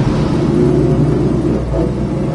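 1970 Chevrolet Nova's engine running steadily at cruising speed, heard from inside the car's cabin with road noise.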